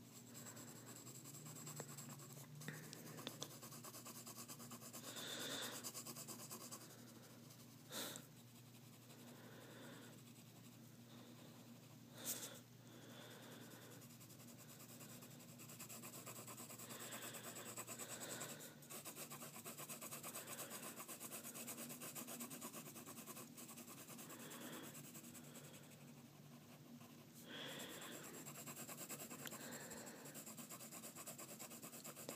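Graphite pencil shading on paper: faint, continuous scratching of the lead stroked back and forth to fill in an area, with two brief knocks about eight and twelve seconds in.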